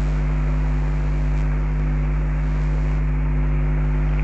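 Steady electrical mains hum, a low buzz with several overtones, over a constant background hiss in the recording.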